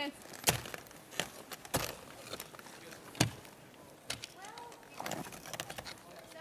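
Ice climbing tools and crampons striking into a frozen ice wall: several sharp, irregular chops, the loudest about half a second in and about three seconds in. Faint voices murmur near the end.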